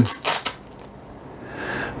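A hook-and-loop strap torn open on a fabric roll-up tool pouch, a short rasp right at the start, then the cloth rustling softly as the pouch is unrolled near the end.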